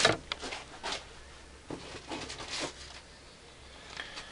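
Clear plastic parts bags crinkling in short, scattered bursts as they are handled and set down on a workbench, mostly in the first second and again a little after the middle.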